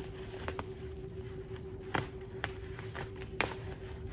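Scissors snipping through layered plastic bubble wrap: several separate sharp snips and crinkles spread over the few seconds, over a faint steady hum.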